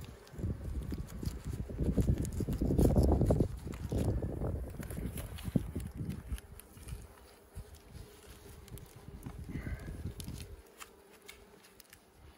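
Gloved hands placing and pressing down a pollen patty on the wooden top bars of a beehive's frames: scattered light clicks and rustles of handling. For the first four seconds or so a loud low rumble lies over the clicks.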